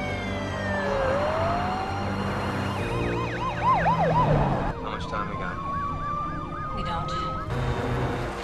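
Police car and ambulance sirens. A wail falls and turns upward about a second in, then a fast yelp warbles about three to four times a second. From about five seconds a slowly rising wail runs together with a second yelp, and both cut off at about seven and a half seconds.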